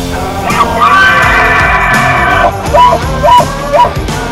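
Rock music bed with a bull elk bugling over it: a long, high, whistling call that rises in about half a second in and holds, then three short, loud chuckles near the end.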